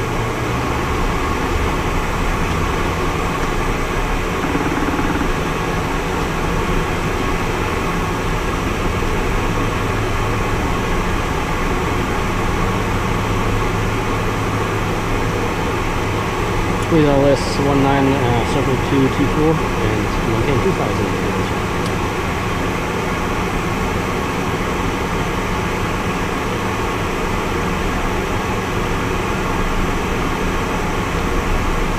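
Small aircraft's engine running steadily, a constant drone heard inside the cockpit. About seventeen seconds in, a voice briefly cuts in over it for two or three seconds.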